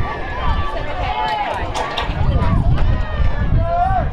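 Voices shouting and calling out across a football field, in long rising and falling calls, over a low rumble.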